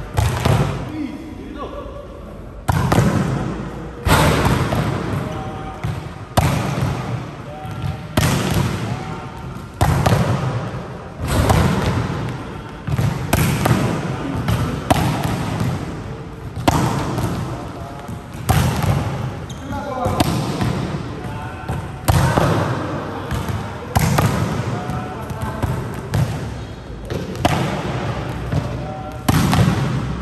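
Volleyballs being spiked and hitting the court floor in a smash-timing drill, a sharp smack about every one and a half to two seconds, each echoing through a large sports hall, with players' voices between the hits.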